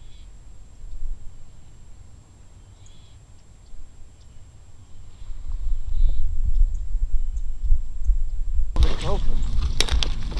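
Wind rumbling on the microphone, growing stronger about halfway through, with a few faint high calls in the distance. Near the end the sound jumps suddenly to louder voices.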